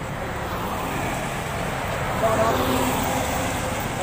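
Roadside traffic noise, with a vehicle passing close by: the noise swells and is loudest a little past two seconds in.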